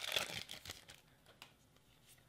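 Foil wrapper of a Pokémon trading card booster pack crinkling and tearing as it is opened. It is loudest in the first second, then dies down to a few faint rustles and ticks.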